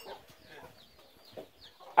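Domestic chickens clucking faintly, with a scatter of short, high, falling calls.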